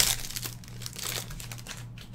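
Trading cards and their clear plastic sleeves and holders being handled and shuffled: crinkling, rustling plastic, sharpest at the very start and thinning out after about a second. A low steady hum runs underneath.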